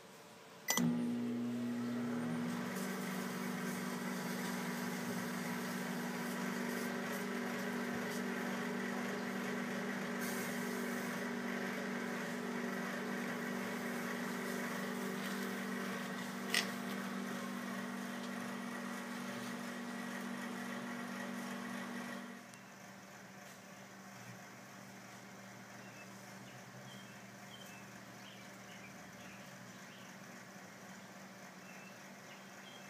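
Microwave oven running with a steady electrical hum while a dead lithium-ion battery pack burns inside, with a single sharp pop about two-thirds of the way through. The hum starts about a second in and cuts off suddenly about three-quarters of the way through, leaving only a faint background.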